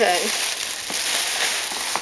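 Plastic packaging rustling and crinkling close to the microphone: a dense, even hiss that starts suddenly and cuts off about two seconds later.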